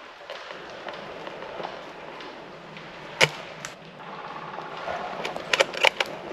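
A single sharp shot from a Silverback TAC-41 spring-powered bolt-action airsoft sniper rifle about three seconds in, followed near the end by a quick cluster of three or four sharp clicks.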